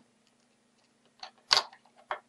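A couple of short sharp clicks from handling a small circuit board while folding its resistor leads into place, the loudest about a second and a half in, over a faint steady hum.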